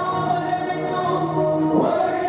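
Several voices singing together in long held notes, like a choir.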